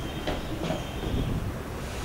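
Steady low background rumble with two faint knocks in the first second.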